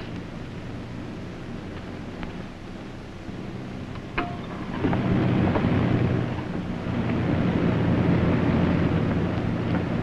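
Aircraft engine drone heard inside the cabin: a steady low hum that grows clearly louder and fuller about five seconds in. A brief click comes just before the rise.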